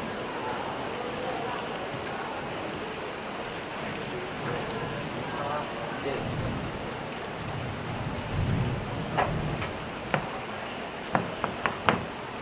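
Steady classroom hiss with faint low murmuring, then from about nine seconds in a string of short, sharp taps of chalk striking a blackboard as lines are drawn.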